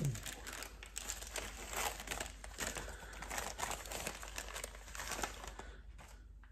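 Wrapping on a small advent-calendar package crinkling and rustling as it is opened by hand to get at a ball of wool. The rustling stops abruptly just before the end.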